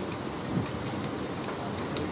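Steady outdoor background hiss, even and rain-like, with a few faint ticks.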